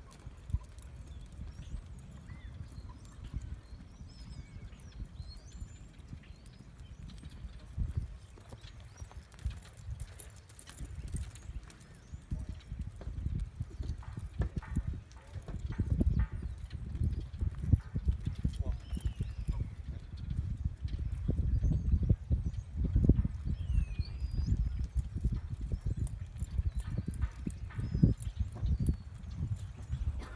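Hoofbeats of a young mustang cantering under a rider on soft arena sand: dull low thuds in a running rhythm. They grow louder in the second half as the horse comes near.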